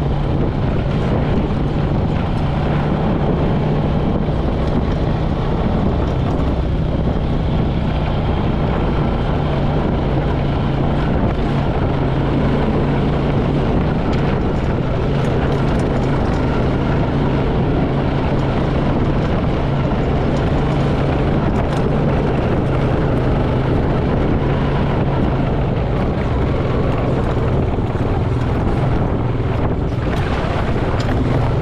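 Small off-road vehicle's engine running steadily as it drives slowly along a grassy trail, a low droning hum that dips slightly in pitch now and then, with wind and rattle noise from the ride.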